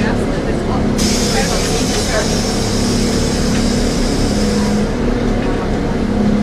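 Airport apron bus cabin: a steady low drone from the bus, with a hiss that cuts in suddenly about a second in and fades out after about four seconds, under people talking quietly.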